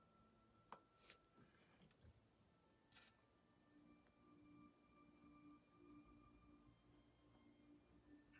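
Near silence: room tone with a couple of faint clicks about a second in.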